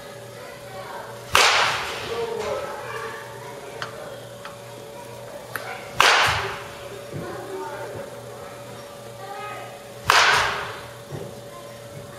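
A baseball bat striking pitched balls three times, about four seconds apart: each a sharp crack with a brief ringing tail, over a steady hum.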